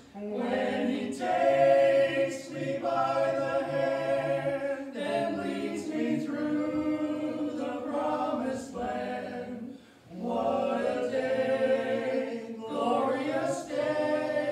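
A small group of voices singing a slow sacred song together in long, held phrases, with a brief pause for breath about ten seconds in.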